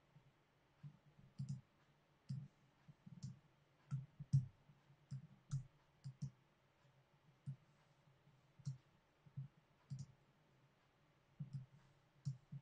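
Faint, irregular clicks of a computer mouse, about fifteen of them, each with a low knock.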